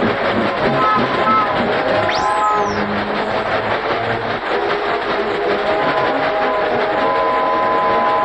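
Cartoon sound effect of a train running: a dense, steady mechanical rush, with a short whistle that rises and falls about two seconds in.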